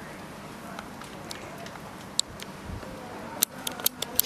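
Low outdoor background noise with a few short sharp clicks: one about halfway through, then three in quick succession near the end.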